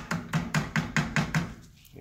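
Wooden spoon knocking and scraping against a stainless steel sauté pan while stirring uncooked rice into vegetables: a quick run of about five knocks a second that stops about three-quarters of the way through.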